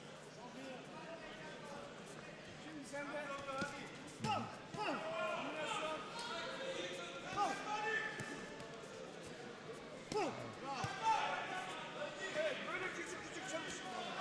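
Boxing gloves landing with dull thuds during an exchange of punches, a few sharper hits standing out, under voices calling out in a large hall.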